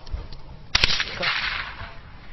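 A single handgun shot about three quarters of a second in, a sharp crack followed by a short echo that dies away within a second.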